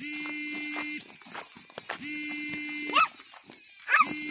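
An electronic buzzing tone at one fixed pitch, rich in overtones, switching on and off abruptly: about a second at the start and another second from about two seconds in. Short rising squeals come between, about three seconds in and again near the end.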